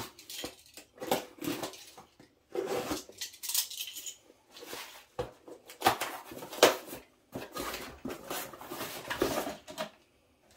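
A cardboard box being opened by hand: irregular rustling, scraping and tearing of cardboard, with two sharp knocks about six seconds in.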